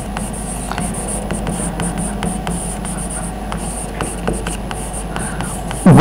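Chalk writing on a blackboard: a quick, irregular run of small taps and scratches as letters are written, over a steady low hum.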